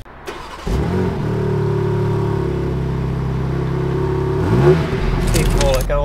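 BMW M4 Competition's twin-turbo straight-six engine running with the roof down. It comes in suddenly about a second in, holds a steady drone, then revs briefly up and back down near the end.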